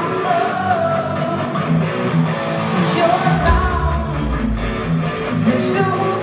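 Rock band playing live, with electric guitars, drums and a sung lead vocal, heard from the audience in a concert hall. A deep low note swells up about halfway through and fades a second or two later.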